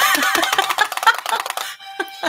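A short burst of recorded music played from a tabletop push-button sound-effect box, pressed to mark a hit card. It cuts off a little before the end.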